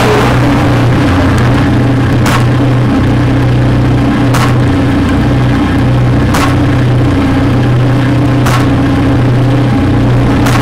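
Engine-like idle hum from the soundtrack of a concept-car dashboard demo, played through the hall's speakers: a steady low drone, with a short sharp tick about every two seconds.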